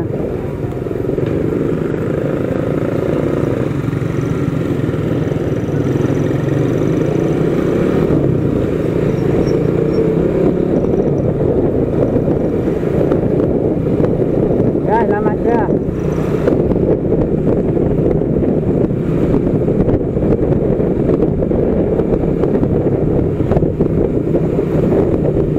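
Motorcycle engine running with steady wind and road noise as the bike is ridden along. A brief voice is heard about 15 seconds in.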